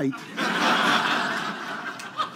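Audience laughing at a joke, swelling about half a second in and then slowly fading.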